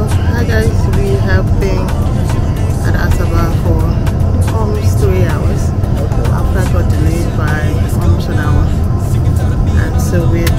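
Steady low drone of an airliner cabin, the engine and air noise heard from a window seat, with a woman talking over it.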